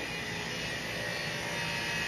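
A neighbour's machine running steadily: a constant mechanical noise with a faint high whine.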